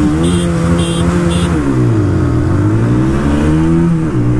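TVS Apache 160 single-cylinder motorcycle engine held at steady launch revs while three short high beeps sound about half a second apart. Then the revs dip as the clutch is let out and climb steadily under hard acceleration, dropping again near the end at an upshift.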